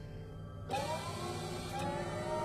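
Sci-fi energy weapon powered by the Tesseract charging up: a sudden swell of rising whines over a hiss, about a second in, settling into a steady electric hum.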